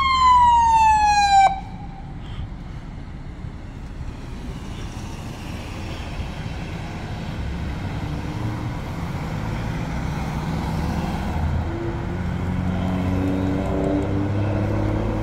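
Fire department ambulance's electronic siren gliding down in pitch and cutting off suddenly about a second and a half in. Then steady engine and traffic noise that slowly grows louder.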